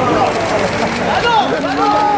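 Several people talking and calling out at once, their voices overlapping.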